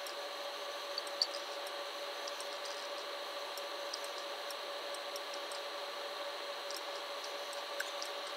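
Room tone: a low, steady hiss with faint constant tones from the recording's background noise, with a few faint ticks scattered through and a small click about a second in.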